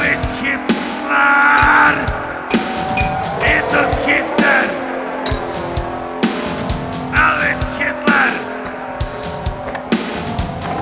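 Live industrial music: a steady drum-machine beat under a sustained bass drone, with harsh screeching bursts breaking in every second or two.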